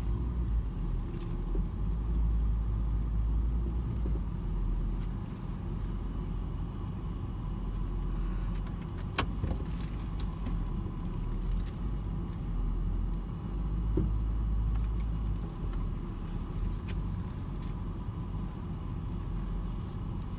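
Low, steady rumble of a car's engine and tyres heard from inside the cabin as the car rolls slowly along, with one sharp click about nine seconds in.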